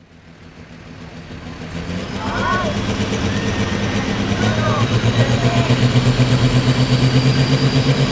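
Altered farm pulling tractor's engine running at the line, hooked to the sled, fading in from silence and growing louder, with a steady low pulsing beat and a faint rising whine near the end.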